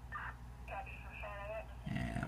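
A faint, thin voice heard through the Uniden BCD536HP scanner's speaker: short snatches of a two-way radio transmission caught as the scanner searches the UHF commercial band. A low steady hum runs underneath.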